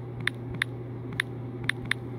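Typing on a smartphone's touchscreen keyboard: about five short, sharp key clicks at irregular intervals, over a steady low hum.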